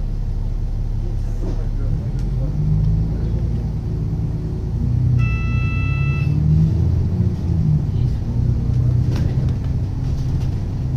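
Inside an Alexander Dennis Enviro 500 double-decker bus on the move: the engine and drivetrain run with a steady low rumble, the engine note rising and easing as the bus pulls. About halfway through, a steady electronic beep sounds for about a second.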